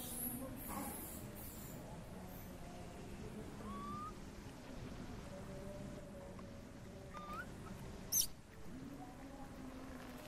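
Baby macaque giving one brief, shrill squeal about eight seconds in, with two short, faint rising squeaks before it.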